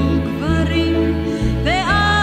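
A song: a voice singing a melody over sustained low notes.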